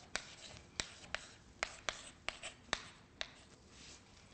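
Chalk writing on a blackboard: about nine sharp taps as the chalk strikes the board, with light scratching strokes between them.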